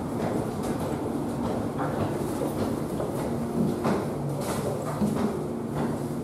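Steady low hum of a ferry's onboard machinery filling a steel stairwell, with footsteps climbing the stairs about once a second.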